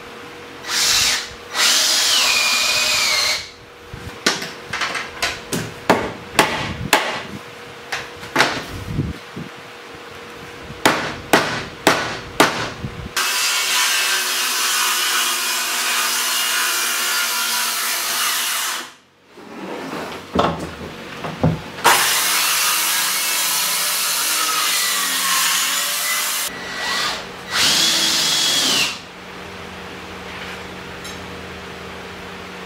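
Power tools at work on framing lumber: short runs of a drill driving screws, its whine dropping in pitch as each screw pulls tight, then a string of sharp knocks about a couple a second. After that a circular saw cuts through a board for about five seconds. Another long tool run and more short screw-driving runs follow near the end.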